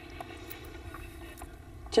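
Steady outdoor background hum with a few faint ticks, in a pause in speech.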